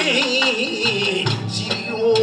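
Kawachi ondo folk song: a male singer's wavering, drawn-out vocal line through a microphone, over the band's accompaniment with drum beats.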